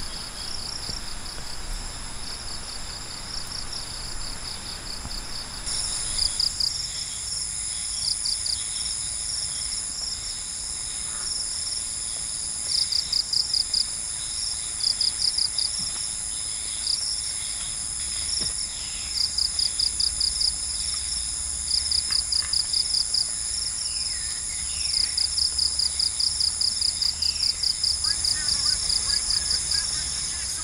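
Evening insect chorus, crickets and similar insects, with a steady high shrilling and repeated bursts of rapid pulsed chirps. It grows fuller about six seconds in as more high-pitched callers join.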